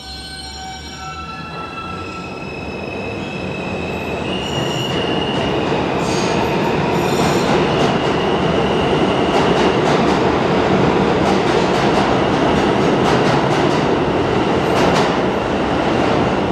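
R160 subway train pulling out of the station and accelerating. Its propulsion whine climbs in steps over the first several seconds and then holds, while the running noise of wheels on rail grows steadily louder. Faint rail-joint clicks come in near the end.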